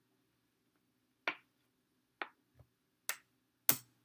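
Plastic checker pieces clicking on the board and against each other as moves are played and captured pieces are stacked: four short, sharp clicks spread over the last three seconds, the last the loudest.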